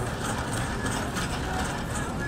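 Shopping cart being pushed along a store floor: a steady rolling noise.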